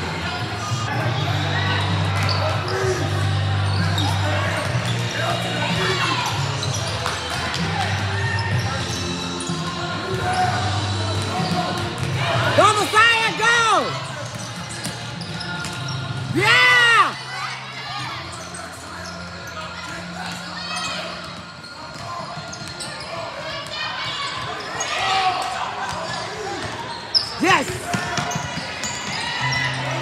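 Basketball game sound in a gym hall: spectators chattering and calling out, and a basketball bouncing on the hardwood court. Two short, loud, pitched sounds stand out about a third and halfway through.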